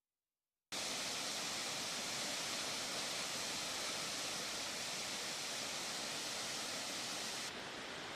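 Waterfall running: a steady, hissing rush of falling water that cuts in abruptly just under a second in. Shortly before the end it drops a little and turns duller, as the sound of a stream flowing.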